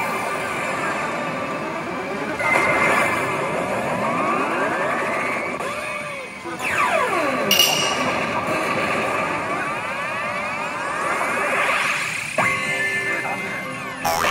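A P大海物語5 pachinko machine playing its electronic reach music and sound effects: a dense run of sweeping rising and falling tones, with a sharp crash-like hit about seven and a half seconds in. This is the build-up of a reach performance heading towards a possible jackpot.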